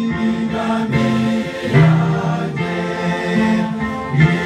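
Large congregation singing a hymn together from hymnals, many voices in harmony holding long notes that change pitch about every second.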